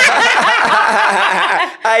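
A woman laughing heartily and loudly, breaking off shortly before the end as she starts to speak again.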